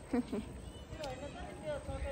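Faint, distant voices against a low background rumble, with a couple of short vocal sounds near the start.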